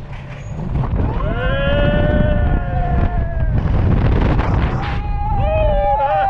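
Roller coaster riders screaming over the rush of wind and the rumble of the ride. One long, held scream starts about a second in, and a second one, with another voice joining, starts about five seconds in.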